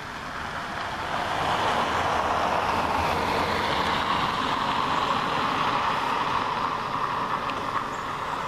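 A road vehicle passing by: a steady rush of tyre and engine noise that builds over the first couple of seconds, holds, and fades near the end.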